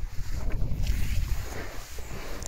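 Wind buffeting the microphone: an uneven low rumble, with some fainter rustling noise above it.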